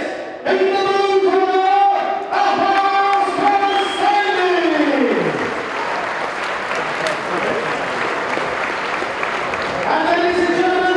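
A voice holding long drawn-out notes that slides down in pitch about five seconds in, followed by crowd applause and cheering.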